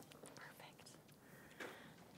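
Near silence in a theater hall: faint rustles and soft murmurs, with one light knock near the end.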